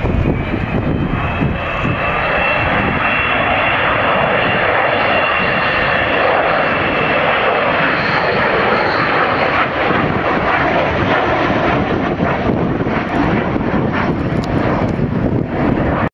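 Avro Vulcan XH558's four Rolls-Royce Olympus turbojets running loud and steady in a flypast. A high whine rides over the jet noise and falls slowly in pitch through the first half.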